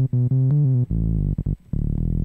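Native Instruments Massive software synthesizer playing a quick phrase of several bass-heavy notes, each changing pitch after a few tenths of a second, with a couple of short breaks about one and a half seconds in.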